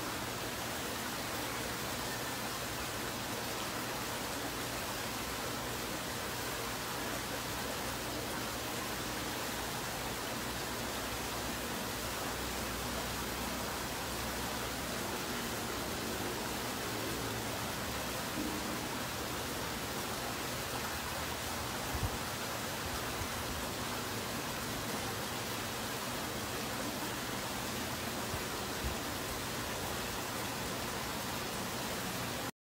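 Steady, even hiss like running water, with a faint click about two-thirds of the way through and another near the end.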